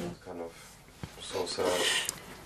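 A voice trails off, then a single faint click, then a soft rasping, rustling hiss rising near the end.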